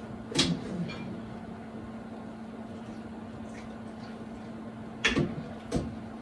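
Kitchenware handling as vegetables are spooned into a pot: a sharp clink or knock about half a second in and two more near the end, over a steady low hum.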